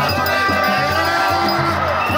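Isukuti drums beaten in a fast, steady rhythm, with many voices singing and chanting over them.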